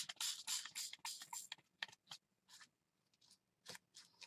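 Several quick spritzes from a small Tattered Angels Glimmer Mist pump spray bottle, short hisses in rapid succession that stop about a second and a half in, with one more faint burst near the end.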